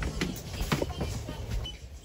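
Several sharp clicks and knocks of a door and footsteps as people step through a doorway, over faint music playing in the room. A short electronic beep comes near the end.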